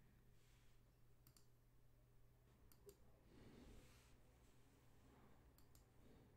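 Near silence, with a few faint computer-mouse clicks scattered through, as the web page is refreshed.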